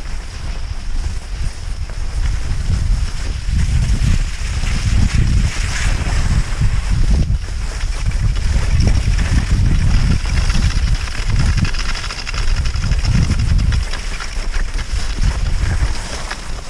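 Wind buffeting the microphone of a camera moving downhill on skis: irregular low rumbling gusts, over the steady hiss of skis sliding on fresh snow.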